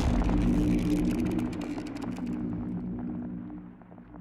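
Cinematic logo-sting sound effect dying away: a low drone of a few steady tones with scattered crackles, fading out steadily.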